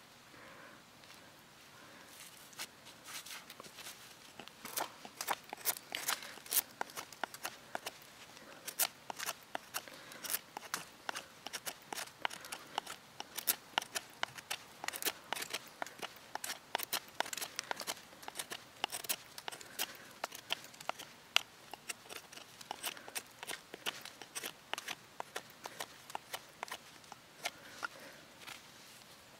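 Morakniv 2000 knife's razor-sharp Scandinavian-ground blade carving a wooden stick: a run of short, crisp shaving cuts, a few a second, starting about two seconds in.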